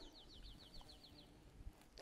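Faint bird trill: a rapid run of short descending notes, about eight a second, lasting just over a second and then stopping.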